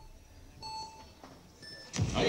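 Electronic speed-climbing start signal: a beep about half a second in, then a higher-pitched beep near the end that starts the race.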